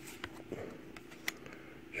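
Trading cards handled in the hands: a card slid off the front of a small stack with a few soft ticks and rustles, the sharpest a little past the middle, over a faint steady hum.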